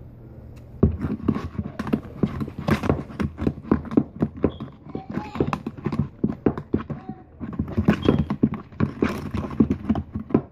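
A rapid, irregular run of knocks and clicks close to the microphone, several a second, starting about a second in.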